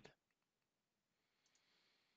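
Near silence: faint room tone with a few very faint clicks.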